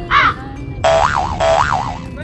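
A cartoon boing sound effect: a wobbling tone that rises and falls twice, starting a little under a second in and stopping abruptly. It comes just after a short squawking call at the very start.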